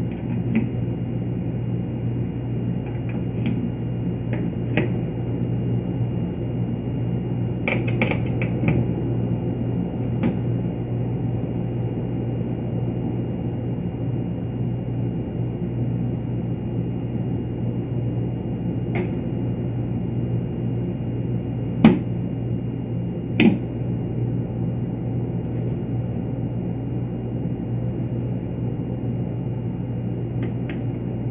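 Steady low electrical hum throughout, with scattered clicks and taps as test leads are handled and plugged into a benchtop electrical trainer board. The two sharpest clicks come late, about a second and a half apart.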